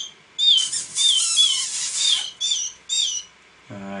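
A young canary chick calling repeatedly: about eight short, high chirps that slide down in pitch, with a harsher hissing stretch in the first half.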